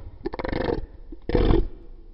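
Dinosaur call sound effect: three short, rough calls of about half a second each, the first right at the start and the last just after the end.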